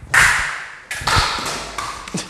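Sharp whacks of a yellow plastic bat being swung at a ball, with the ball striking hard surfaces: two loud cracks about a second apart, with low thuds between.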